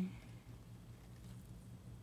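Quiet room tone with a faint steady low hum; the last syllable of a word trails off at the very start.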